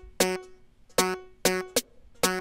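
Short, plucky synth chord stabs from a Korg Polysix software synth, four of them in an uneven, syncopated rhythm, each dying away quickly.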